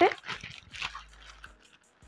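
Faint crinkling of plastic packaging as a packet of synthetic braiding hair is handled, following the tail end of a spoken word.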